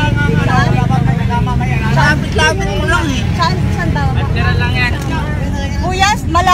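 Voices talking over the steady low rumble of a jeepney's engine, heard from inside the passenger cabin.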